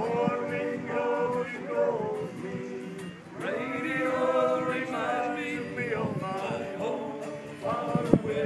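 A group of voices yodelling without words in close harmony, holding long notes, with a short break about three seconds in.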